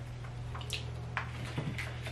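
Someone chewing a bite of a burger, with a few short wet mouth clicks, over a steady low hum.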